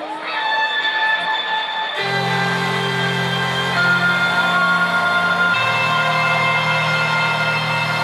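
Rock band playing live through a festival sound system: the instrumental intro of a song, sustained high notes at first, then bass and the full band come in about two seconds in and play on steadily.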